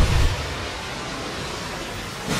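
A low boom dying away in the first quarter second, then a steady, even hiss.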